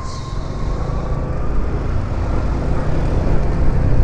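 Yamaha motor scooter running steadily under way, its engine hum mixed with heavy wind and road noise on the camera microphone.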